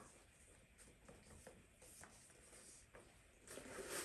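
Near silence with faint handling noise from a small handbag: light taps and rustles, and a louder rustle near the end as the bag is opened.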